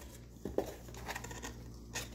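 Leather bag being handled: faint rubbing and rustling with light knocks, one clearer knock about half a second in and another near the end.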